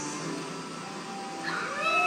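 A song stops, leaving quieter room sound. About one and a half seconds in, a high-pitched drawn-out voice call begins, sliding up in pitch and then holding.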